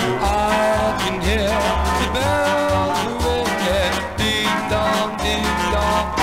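1950s doo-wop record playing: held notes that waver in vibrato, most likely the group's vocal harmonies, over changing bass notes and a steady beat.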